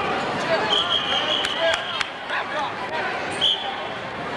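Referee's whistle stopping the wrestling: one long blast of about a second, then a short toot near the end, over shouting spectators and a few sharp knocks.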